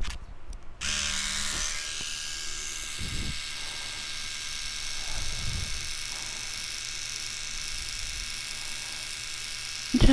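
A small electric eyebrow trimmer switches on about a second in and buzzes steadily close to the microphone, with a couple of soft handling bumps.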